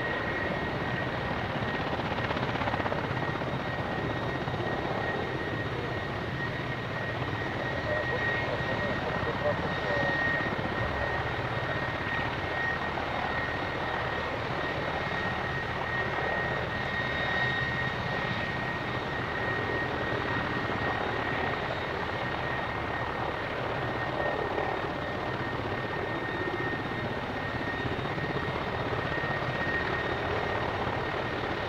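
Mil Mi-171 twin-turboshaft helicopter running on the ground with its rotors turning: a steady high turbine whine over even engine and rotor noise.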